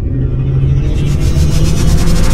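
Cinematic logo-intro sound design: a deep rumbling drone with a few held low tones, while a rising whoosh swells and brightens, building up.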